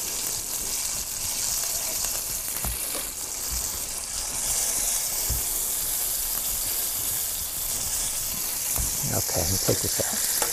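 Chicken breasts sizzling in a skillet, a steady high hiss, with a few soft knocks from lemons being rolled by hand on a wooden cutting board.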